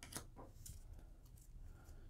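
Near silence, with a couple of faint soft ticks near the start from trading cards being handled.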